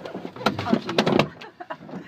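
Indistinct, low voices with a few sharp clicks, the loudest stretch about half a second to a second in.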